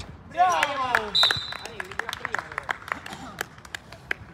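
Players shouting as a goal goes in, a short high whistle blast, then scattered hand claps and sharp knocks.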